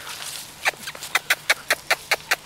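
A lab–pointer mix dog breathing in quick, short puffs, about five or six a second, starting under a second in and going on steadily.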